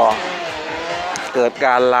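A motorcycle engine running steadily in the background under a man's speech.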